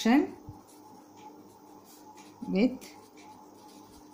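Pen writing on paper: faint, short strokes as a line of words is written out by hand.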